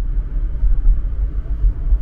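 Low, uneven rumble inside a moving car's cabin: road and engine noise while driving.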